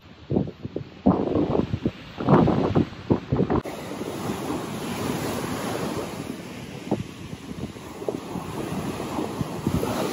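Wind buffeting the microphone in uneven gusts for the first three or four seconds. After a cut, a steady wash of sea waves breaking on the shore.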